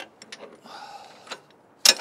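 Metal hardware at a tractor's pintle hook and a converter dolly's drawbar being handled: light clicks and a short scraping rub, then one sharp metallic clank near the end, the loudest sound.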